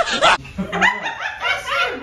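Human laughter in quick repeated bursts, cut off abruptly about half a second in, then more laughing.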